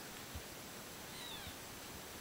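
Cats play-wrestling: a faint, brief, high falling mew a little over a second in, with two soft low thumps as they tumble.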